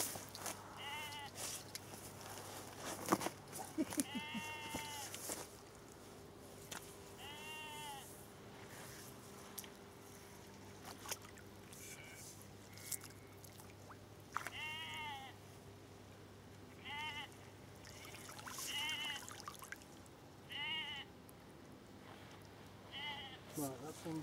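Sheep bleating: about eight short, wavering calls spaced a few seconds apart, with a few sharp clicks in between.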